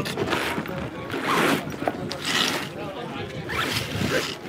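A zipper being pulled in several short strokes, about one a second, plausibly opening or closing a gym bag.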